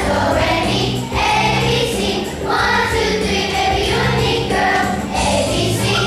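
A fourth-grade children's choir singing in unison to a musical accompaniment, in held, sustained phrases.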